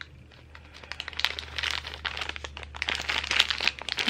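Plastic bag and tissue-paper wrapping crinkling as a set of rune tiles is handled, starting about a second in after a short quiet moment. A faint steady low hum runs underneath.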